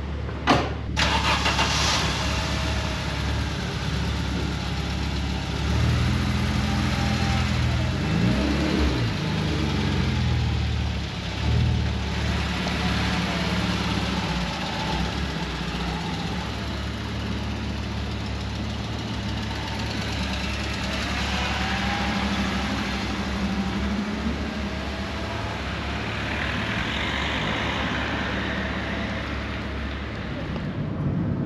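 A 1989 Audi Coupé GT's 2.2-litre five-cylinder engine starting about a second in, just after a sharp click, then running at low revs. Its note rises and falls several times between about six and twelve seconds in, then settles to a steady run.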